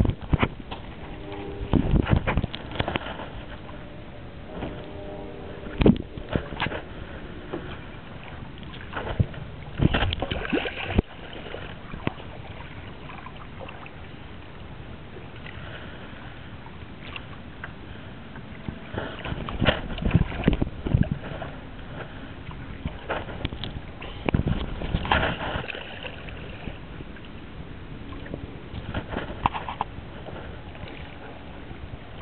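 Water sloshing and splashing against a stand-up paddleboard, with irregular knocks and bumps on the board and its gear, several sharp ones spread through the stretch.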